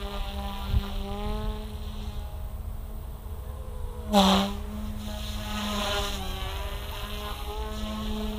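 Small electric RC helicopter in flight, its motor and rotor whine held steady with small rises and falls in pitch as it manoeuvres; it is flying in idle-up at high head speed. A short louder burst comes about four seconds in.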